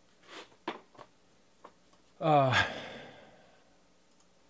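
A man sighing aloud once, about halfway through: a low voice sound falling in pitch that trails off into a fading breath. A few faint clicks come before it.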